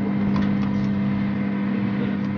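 Steady electric hum of a convection microwave oven running while it preheats, with a faint light clink of a metal cake tin on the oven rack about half a second in.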